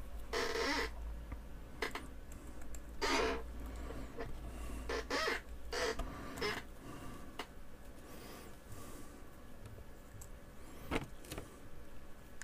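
Small plastic kit parts and nylon fasteners being handled and done up by hand: a few brief scattered rustles and scrapes, with one sharp click near the end.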